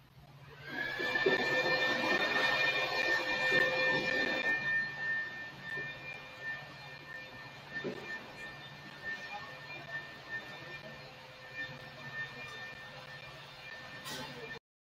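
A steady machine whine starts about a second in: several high, held tones that rise slightly as they come on, over a rushing noise that is loudest for the first few seconds and then eases.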